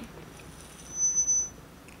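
A single short, high-pitched electronic beep about a second in, lasting about half a second.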